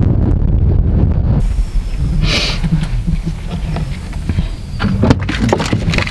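Wind buffeting the microphone of a camera held out of a moving van's window, a loud low rumble with road noise, which cuts off about a second and a half in. After that there is quieter outdoor sound with a brief hiss a little after two seconds and a few sharp clicks and knocks near the end.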